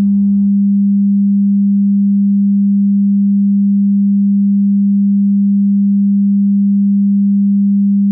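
A single steady electronic pure tone, fairly low in pitch and loud, held without change. A faint musical layer under it stops about half a second in.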